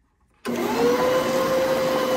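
Electric stand mixer switching on about half a second in, its motor whine rising quickly to a steady pitch and running on as the paddle beats almond paste into creamed butter and sugar.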